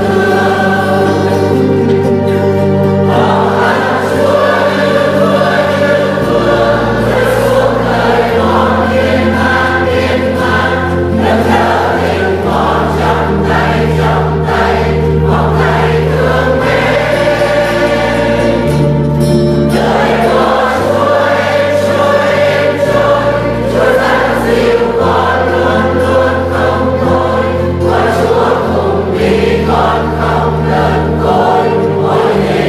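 A congregation singing a Vietnamese hymn together over a steady instrumental accompaniment, its held bass notes changing every couple of seconds.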